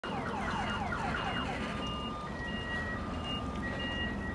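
Electronic car alarm siren running through its tone cycle: a string of quick falling sweeps, about four a second, then steady tones that switch between a few fixed pitches. A steady low rumble runs beneath.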